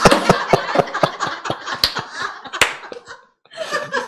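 Laughter through a handheld microphone, in rapid short bursts that thin out and break off briefly a little after three seconds in.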